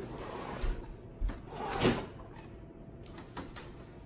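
Refrigerator door being opened: a light knock about a second in, then a louder thud as the door comes free just before two seconds in.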